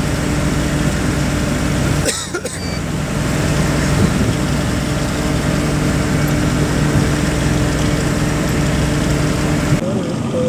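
Truck engine running at a steady pitch while driving, with road noise, heard from the cab. There is a brief drop about two seconds in, and the sound changes abruptly just before the end.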